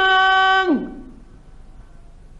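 A male Quran reciter's voice holding a long, steady melodic note that drops sharply in pitch and ends about three-quarters of a second in, followed by the faint hiss of an old 1950s recording.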